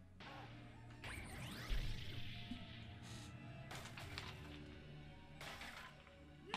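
Anime soundtrack at low volume: dramatic background music with action sound effects, including a heavy crash a little under two seconds in.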